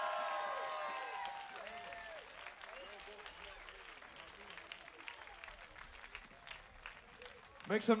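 Audience cheering and applauding. Several held, whooping voices at first give way to clapping that dies down steadily.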